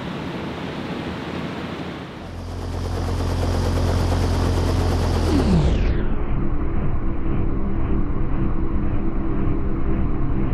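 A steady rush of air from a ring of box fans and the whirling kerosene fire. After about two seconds it gives way to a deep rumbling drone over the slow-motion shot. The drone sweeps down in pitch about five and a half seconds in, losing its high end, and carries on as a muffled low rumble with a steady hum.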